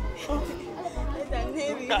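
People talking and chattering over background music with a pulsing bass beat.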